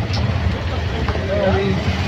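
Auto-rickshaw engine running steadily while the vehicle is under way, heard from inside the open cabin as a continuous low rumble mixed with street noise.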